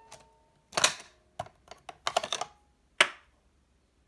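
Cassette mechanism and piano-key controls of a Sanyo M 7800K boombox clicking and clattering as the cassette is ejected and lifted out of its well: a run of short sharp clicks, then one last sharp click about three seconds in.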